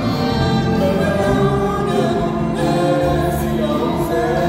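Live orchestra with bowed strings playing sustained notes at a steady, full level.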